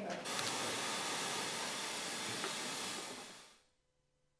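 Loud, steady white-noise hiss that switches on abruptly and fades out near the end: courtroom masking noise covering a bench conference.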